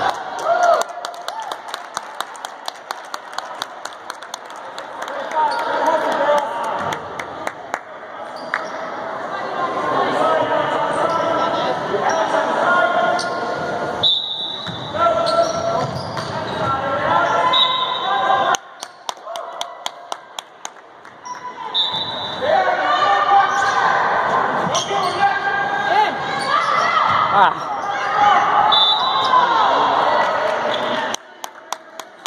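A basketball dribbled on a hardwood gym floor: a quick, even run of bounces through the first several seconds and another short run about two-thirds of the way in, under the voices of players and spectators in the gym.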